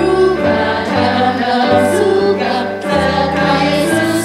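Two women singing an upbeat Indonesian children's worship song in unison into microphones, over an instrumental backing track with a steady bass line.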